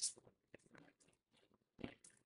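Tarot cards being shuffled by hand, faint: soft scattered clicks and slides of the cards, with a short louder rustle near the end.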